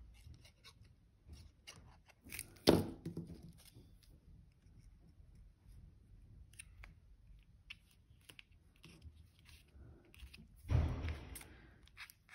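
Soft handling of paper die-cuts and card on a craft mat, with one sharp tap about three seconds in as a plastic liquid glue bottle is set down, and a brief papery rustle near the end.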